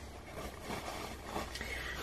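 Faint rustling of a lint-free tissue being picked up and handled, over a low steady hum.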